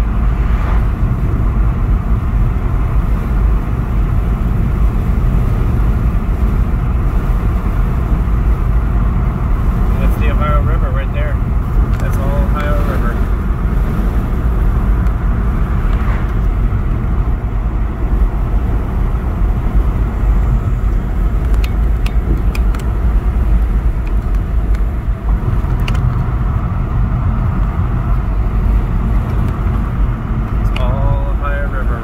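Steady road noise inside a moving car's cabin: a low rumble of tyres and engine at driving speed, with a few faint clicks.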